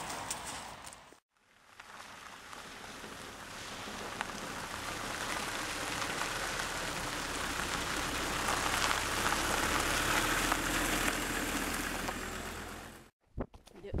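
Land Rover Discovery towing a trailer on a gravel road: tyre crunch and engine noise build to a peak and then fade, with a steady low rumble underneath, before cutting off suddenly just before the end.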